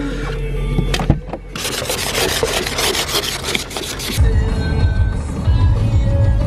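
An ice scraper scraping frost off a frozen car windscreen in quick repeated strokes for a couple of seconds, followed about four seconds in by the low rumble of the car driving.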